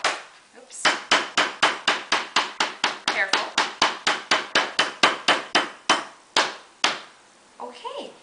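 The back of a kitchen knife pounding a lemongrass stalk on a cutting board in quick, even blows, about four a second, bruising the stalk to release its flavour. The blows begin about a second in and stop about seven seconds in.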